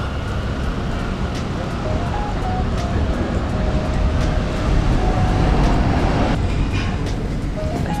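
A steady, loud low rumble with sparse melody notes of background music over it.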